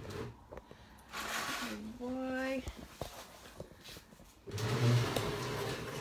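Camera being handled and repositioned: rubbing and knocks on the microphone, growing louder near the end. A short held voice sound about two seconds in.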